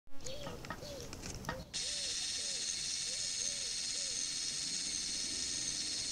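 Camcorder zoom motor whirring as the lens zooms in: a steady high whir that switches on about two seconds in and stops abruptly at the end. Underneath, a bird gives short repeated calls, about two a second, during the first four seconds.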